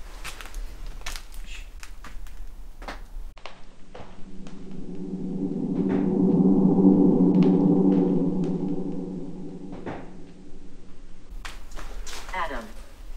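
A few faint sharp knocks and clicks, then an edited-in low gong-like drone that swells up to a loud peak about seven seconds in and fades away, with a few sharp knocks heard through it.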